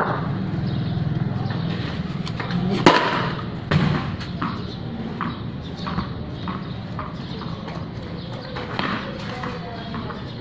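A loud, sharp knock about three seconds in and a second one a moment later, then a run of lighter, evenly spaced taps, under a low hum.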